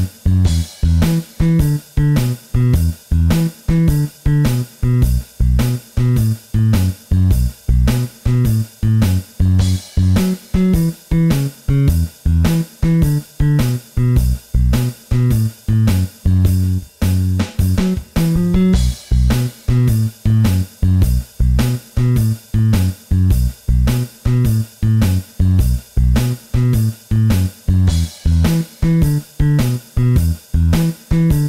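Drums-and-bass blues backing track with no guitar: a 12-bar blues in B at 105 bpm, with an electric bass line stepping up and down over a steady drum beat and a cymbal crash now and then.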